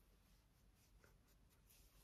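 Near silence: room tone, with a few faint soft brushing rubs of a makeup brush on the skin.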